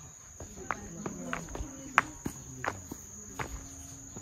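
A steady, high-pitched drone of insects, with a string of short footstep clicks as someone walks; the sharpest click comes about halfway through.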